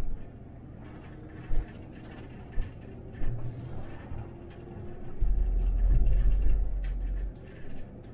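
Cabin noise of an 18-metre MAN Lion's City bus driving on a country road: a steady low rumble with a few short low thumps, and a louder low rumble lasting about two seconds past the middle.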